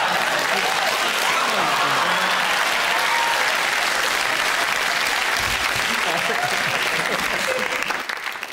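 Studio audience applauding, with laughter and voices over it, steady and then dying away near the end.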